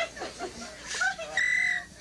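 A short, high, steady whistle lasting about half a second, heard after a brief rising one, over party chatter and laughter.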